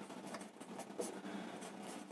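Marker pen faintly scratching on a whiteboard as a word is written, with a light tap about a second in.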